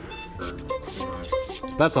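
A few soft, held notes played on an acoustic instrument during studio chatter, stepping from one pitch to the next; a man starts speaking near the end.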